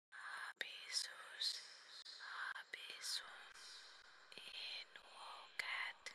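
Faint whispering voice: a string of short breathy whispered phrases with brief pauses between them, and no words that can be made out.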